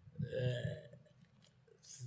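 A man's brief throaty hesitation sound in a pause mid-sentence, then a short breathy hiss near the end.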